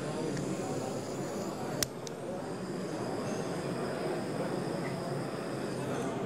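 Steady background hiss of a hall's room tone, with a single sharp click about two seconds in.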